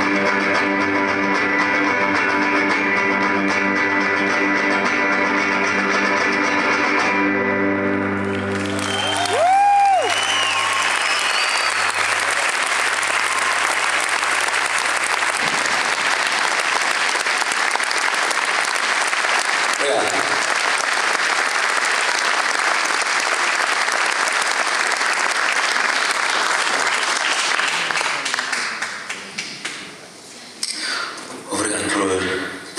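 The final chord of an electric guitar instrumental rings out for about seven seconds and stops. A high rising-and-falling whoop from the crowd follows, then a long burst of applause and cheering that dies down near the end.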